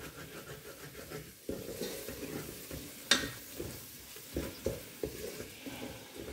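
Sliced onions sizzling faintly in oil in an aluminium pressure cooker as they are stirred with a wooden spatula. The spatula scrapes and knocks against the pan a few times, the sharpest knock about three seconds in.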